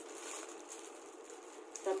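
Faint rustling of a clear plastic curtain package being handled and turned over, with a spoken word near the end.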